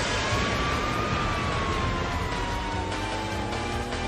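Police motorcycle siren wailing: one tone that rises for about a second, then slowly sinks, over a steady rumble of engine and road noise.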